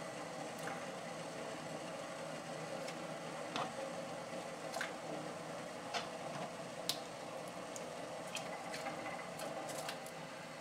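Water boiling steadily in a stainless steel saucepan, with about ten short plops scattered through as strips of burbot are dropped into it one at a time.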